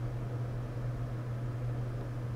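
Steady low hum with a faint hiss underneath, unchanging and without any distinct clicks or knocks.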